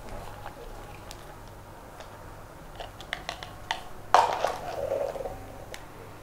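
A few light clicks, then a thin plastic zipper bag crinkling for about a second as it is handled and lifted, over a faint steady hum.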